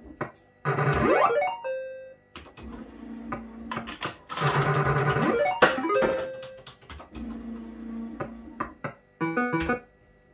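JPM Hot Pot Deluxe fruit machine playing its electronic game sounds as the reels are spun again and again: sharp clicks, a rising electronic tone sweep and short beeps, repeating about every three and a half seconds. Near the end comes a quick run of stepped beeps.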